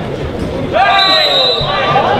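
A loud shouted call of about a second, falling in pitch, over the murmur of a football crowd.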